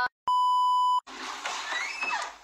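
Censor bleep: a steady, pure beep tone lasting about three-quarters of a second that cuts off the end of a spoken line. It stops suddenly and gives way to a stretch of hiss-like noise with faint rising squeaks.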